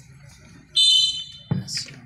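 Wrestling referee's whistle: one sharp, high blast lasting under a second, followed by a thump.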